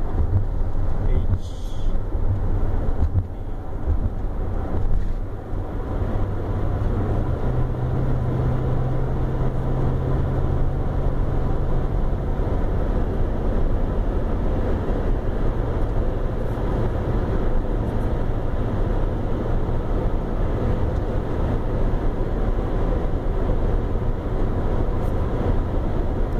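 Steady road and engine noise heard inside a moving car's cabin at highway speed: a continuous low rumble of tyres on dry pavement.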